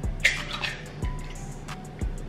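Background music, with an egg being cracked by hand at the start and its contents dripping messily into a plastic bowl.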